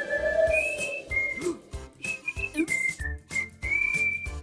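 Cartoon character whistling a tune, held notes that step up and down in pitch, with soft taps and low thumps beneath.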